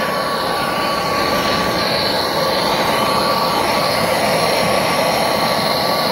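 Handheld gas torch burning steadily: an even, unbroken hiss with a faint steady whistle-like tone, as its flame heats a seized bolt in an engine casting to free it.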